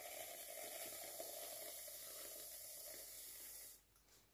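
Puleva aerosol whipped-cream can spraying cream from its nozzle, a steady hiss that cuts off near the end.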